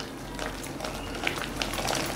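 Hand beating thick ground urad dal batter in a steel bowl, a soft wet squelching with small clicks, whipping air into the batter to make it fluffy.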